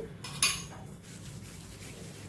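A single short clink of a metal spoon against a ceramic bowl about half a second in, then faint rubbing of gloved hands spreading cooking oil over the palms.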